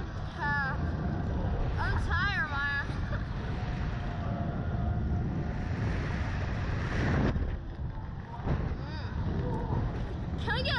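Wind buffeting the microphone of the camera riding on a Slingshot bungee ride as it flings its riders through the air; the rushing builds to about seven seconds in and then drops off suddenly. Short, high, swooping yelps from the riders come about half a second and two seconds in.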